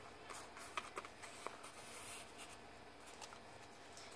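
Faint rustling of paper with a few light scattered ticks: a paper tag and cards being handled and slid into a paper pocket of a handmade junk journal.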